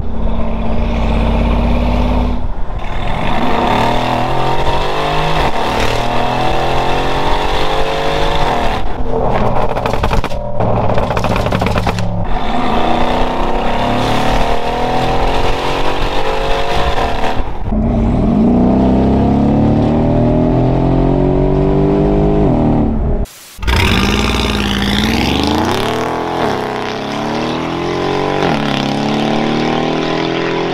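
Mercedes-AMG G63 twin-turbo V8 through a full Quicksilver exhaust, pulling hard: the revs climb again and again with a drop at each gear change. About 23 seconds in, after a brief break, the engine is heard from outside the vehicle, its pitch sliding down as it passes and moves away.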